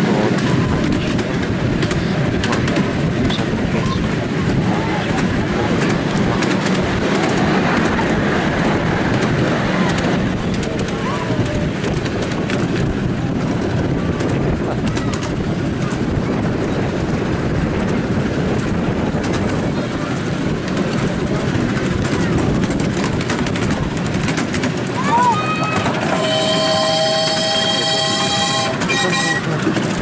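Miniature Flying Scotsman 4472 steam locomotive and its passenger cars running along the track, a steady rumble of wheels on rails. Near the end a whistle sounds one steady note for about three seconds.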